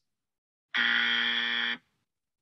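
Game-show style wrong-answer buzzer sound effect: a single flat, steady buzz about a second long, starting a little way in, marking an incorrect answer.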